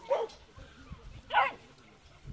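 Border collie pup giving two short, high barks while working sheep, the second louder and about a second and a half after the first.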